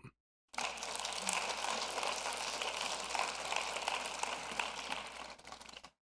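Audience applauding as a speaker comes to the lectern, starting about half a second in and dying away near the end, over a faint low hum of the room recording.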